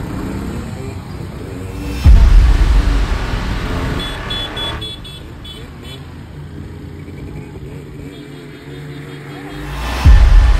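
Several motorcycles running together on the road, their engines getting suddenly louder about two seconds in, with a row of short high beeps around four seconds in.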